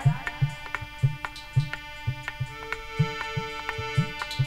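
Instrumental bhajan accompaniment: a sustained chord held under a steady hand-drum beat of about two strokes a second, with sharp ticking percussion strikes over it.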